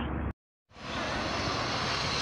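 After a moment of dead silence at an edit cut, a steady outdoor rushing noise fades in and holds, with no distinct events in it.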